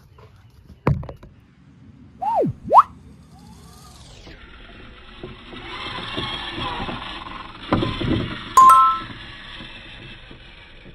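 Edited-in outro sound effects: a sharp falling zap, two quick boing-like pitch glides, a downward swoosh, then a hissing rush and a two-note ding near the end as a subscribe bell appears.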